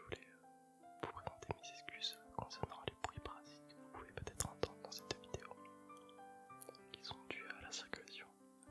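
Close-miked whispering in French, with sharp mouth clicks, over soft background music of held notes.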